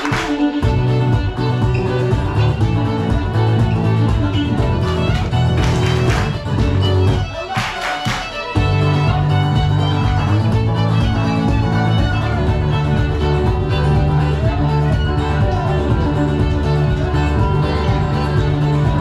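Live Irish traditional tune played on fiddle with guitar accompaniment. The music thins briefly about seven seconds in, with a few sharp noisy sounds around then, and picks up again at full strength.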